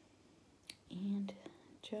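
A woman's soft, close voice: a faint click, then a short hummed 'mm' at one steady pitch about a second in, and the word 'perfect' beginning with a rising pitch near the end.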